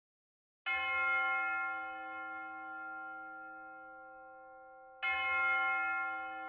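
A bell struck twice, about four seconds apart, each stroke ringing on and slowly fading.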